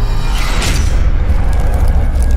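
Cinematic logo-intro sound effect: a loud, sustained deep boom, with a brief whoosh about half a second in.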